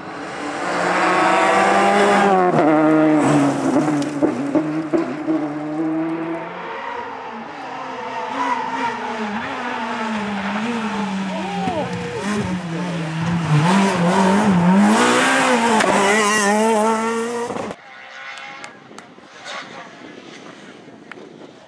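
Rally cars passing at speed on a special stage, engines revving hard with pitch climbing and dropping through gear changes. The sound is loudest twice as cars go by, then drops sharply near the end to a fainter, more distant car.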